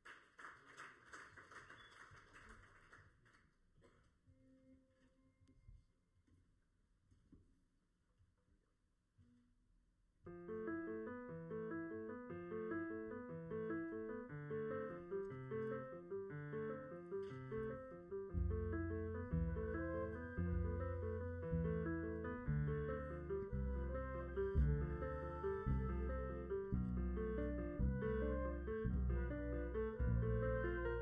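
Brief audience applause, then a few seconds of near-quiet stage sounds. About ten seconds in, a jazz band starts a tune with electric guitar and piano, and the bass joins about eighteen seconds in.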